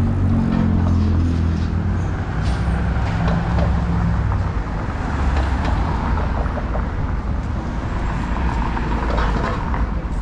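City street traffic: car engines and tyres passing close by, with a low steady engine hum through the first four seconds.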